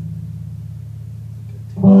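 Guitar notes ringing on low and steady, then a string plucked loudly near the end, its note sustaining.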